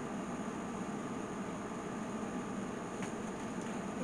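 Steady background hiss with a faint even hum, the room's own noise; a light click about three seconds in.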